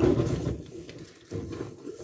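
A woman's low voice trailing off, then a short low murmur about a second and a half in.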